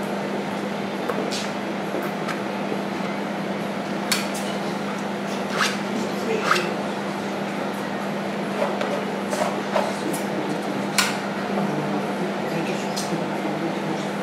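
Steel palette knife clicking and scraping against the palette and the painted canvas: a scattering of short, light metallic clicks over a steady low hum.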